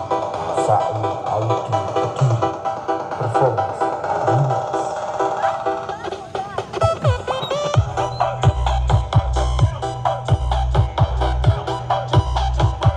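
Loud electronic dance music played through the SAE Audio truck-mounted carnival sound system. About seven seconds in a sweep leads into a heavy, pounding sub-bass beat.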